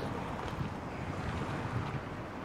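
Wind blowing across the camera's microphone: a steady, low, rumbling rush.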